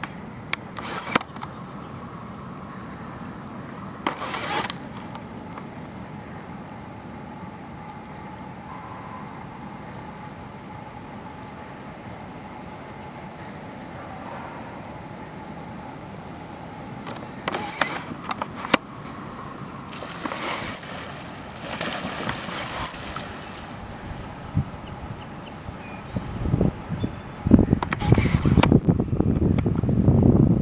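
Outdoor background with a steady low hum, broken by short bursts of noise that come more often and louder near the end. No goose calls stand out.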